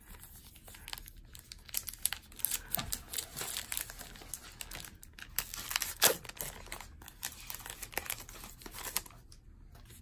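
Wrapper of an Allen & Ginter baseball card pack crinkling and tearing as it is pulled open by hand: a run of sharp crackles, the loudest about six seconds in, dying away near the end.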